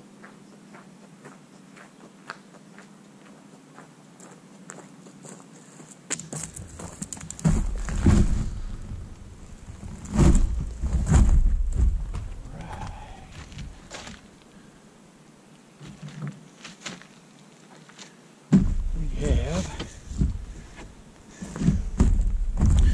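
Low background with faint ticks, then from about six seconds in, footsteps on gravel and bumps, rustling and handling noise close to the microphone in several loud spells, the last beginning near the end.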